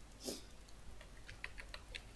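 Computer keyboard keys being typed, a quick run of light clicks in the second half. A brief soft puff of noise comes shortly before them.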